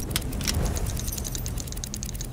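A K.I.S. steering-spring durability test machine running its cycles: a steady low mechanical hum with quick, faint clicking.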